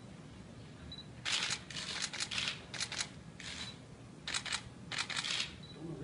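Camera shutters firing in repeated rapid bursts, one cluster of clicks after another, with a few short faint high beeps between them.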